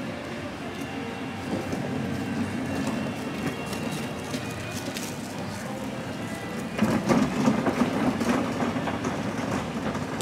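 Steady outdoor background noise; about seven seconds in, a louder rolling rumble and rattle starts, from a wheeled cart pushed onto the planks of a wooden footbridge.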